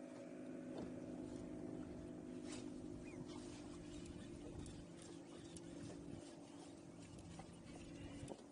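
Faint, steady hum of a bow-mounted electric trolling motor, with a few scattered light ticks over it while a fish is being played on a bent rod.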